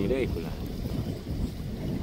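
Wind buffeting the microphone, a low, uneven rush, with choppy wind-driven water on a wide pond.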